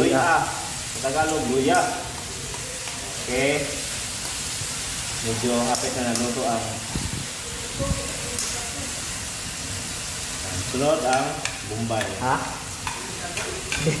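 Chopped vegetables sizzling in a stainless steel wok over a portable gas burner, a steady frying hiss as they are stirred with a utensil.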